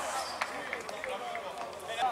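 Faint, scattered shouts and calls of football players across an outdoor pitch, with one sharp knock about half a second in.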